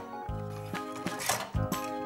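Light background music with steady sustained tones, with a few faint clicks of hard plastic toy figures being set down on a plastic slide.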